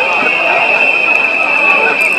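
A shrill, steady whistle tone from protest whistles blown without a break over a crowd's mixed chatter.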